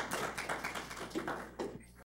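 Scattered applause from a small audience: quick, irregular hand claps that die away near the end.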